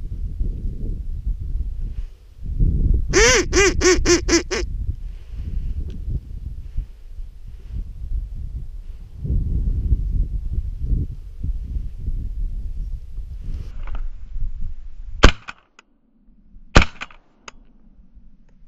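A duck call blown in a quick run of about six quacks a few seconds in, then two shotgun shots about a second and a half apart near the end, the loudest sounds. A low rumble of wind and handling on the microphone runs under it.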